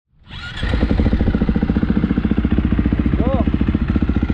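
A 2019 Husqvarna FC350's single-cylinder four-stroke engine idling with a steady, rapid beat, freshly started. The sound fades in over the first half second.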